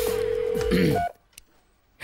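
Telephone line tone as a call connects: one steady mid-pitched tone that stops about a second in, ending on a short higher beep, followed by near silence.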